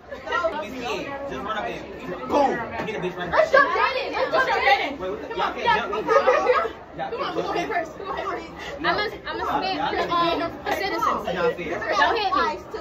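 Several teenagers talking over one another in lively chatter.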